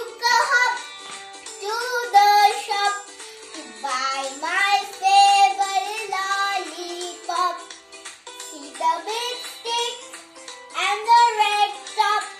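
A child's voice singing a song in phrases over instrumental backing music with steady held notes.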